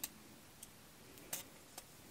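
Faint light clicks from handling a Speedweve darning loom and a knitted sock: four small ticks spread over two seconds.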